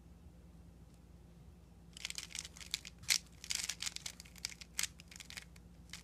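Plastic 3x3 speedcube turned fast through a PLL algorithm (the Nb perm), the layers clicking and rasping as they turn. The burst of turns starts about two seconds in and stops shortly before the end.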